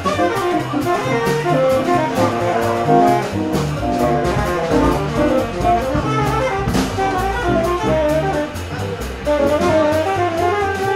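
Live jazz combo playing a minor blues: a tenor saxophone plays a running melodic line over a plucked upright bass and drums with steady cymbal strokes.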